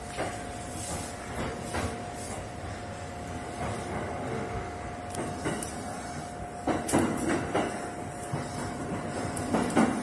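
E231 series electric train running, heard from the cab: a steady rolling hum with a steady tone, and clusters of sharp knocks as the wheels pass over points, about seven seconds in and again near the end. The audio has an added echo effect.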